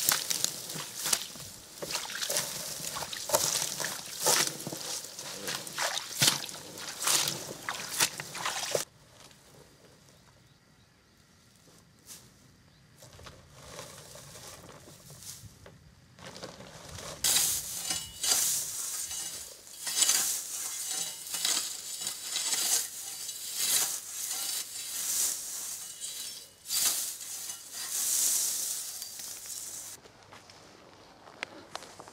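Dry hay crackling and rustling with sharp crunches as it is stamped down with a boot and pressed by hand into a plastic compost bin. The sound breaks off about nine seconds in to near quiet, and similar rustling and crackling comes back about halfway through.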